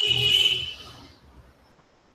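Steady hiss with a high-pitched whine and a low hum from an open microphone on a video call. It fades out over the first second and a half and then cuts to silence.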